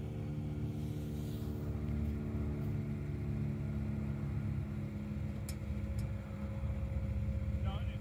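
Ford Bronco's engine idling steadily, with two faint clicks around the middle.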